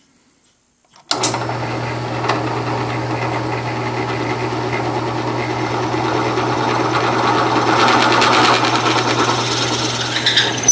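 Drill press running, its twist bit boring down into a square sycamore pen blank: a steady motor hum under the noise of the bit cutting the wood, which grows louder toward the end. It starts abruptly about a second in, after near silence.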